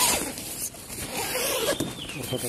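A zipper being pulled: a loud quick zip at the start and a longer run of zipping about a second in.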